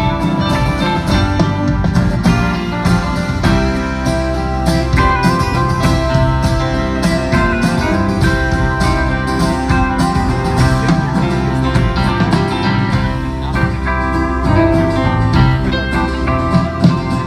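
Live band playing an instrumental passage with no singing, guitar to the fore over bass and drums.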